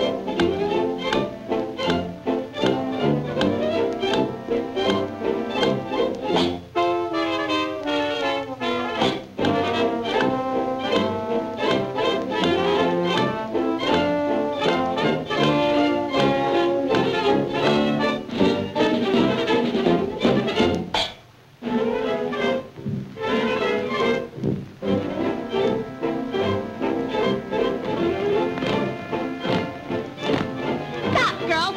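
Early sound-film soundtrack of a jazz-era dance orchestra playing a brisk chorus number, with brass prominent and a steady beat. A falling run of notes comes about seven seconds in, and the music breaks off briefly just past twenty seconds before going on.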